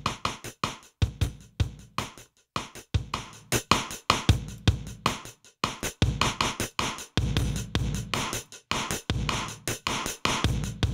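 Drum loop beat of kick, snare and cymbals, with a heavily blown-out parallel wet signal from a Chase Bliss Generation Loss MKII pedal blended under the dry drums. From about six seconds in the beat sounds thicker and more sustained as a 1176-style compressor plugin is brought in on the wet chain.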